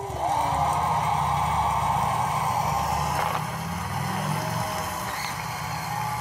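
Audience applauding and cheering, heard through a laptop's speakers and easing off slightly after about four seconds.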